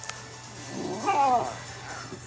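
Bernese mountain dog puppy "talking": one drawn-out, whining call that rises and then falls in pitch, about a second in.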